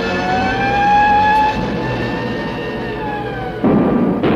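Theme music with a long held note that rises a little and then sinks. Near the end, a sudden loud roar breaks in: the cartoon moon rocket's engines firing for lift-off.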